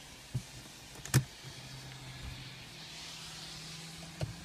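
A sharp click, then a steady low hum from the car as its ignition is switched on.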